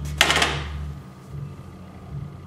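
Metal baking sheet of cookies set down on a stovetop: one sharp metallic clatter about a quarter second in that rings briefly and fades, over a low steady hum.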